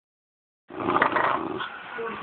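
Dog growling during a tug-of-war game on a toy. The growl starts abruptly after a moment of silence, under a second in.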